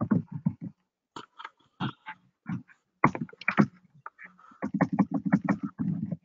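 Computer keyboard keystrokes: a quick run of taps at the start, scattered single keys, then a fast burst of typing about two-thirds of the way in.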